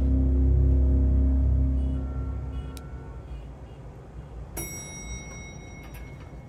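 A low, sustained film-score drone fades out midway. About four and a half seconds in, a single lift arrival chime rings out and holds.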